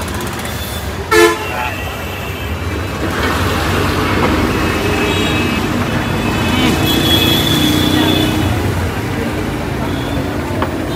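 A vehicle horn gives one short toot about a second in, over the steady rumble of street traffic.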